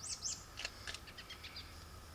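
A small bird chirping faintly: two quick high arched chirps at the start, then a few scattered short high peeps.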